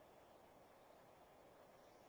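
Near silence: a faint, steady background hiss.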